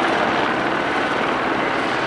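A steady, loud engine drone that does not change.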